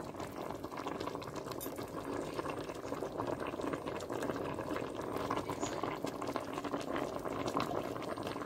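Pot of sinigang broth boiling on the stove: a steady, dense bubbling full of small pops.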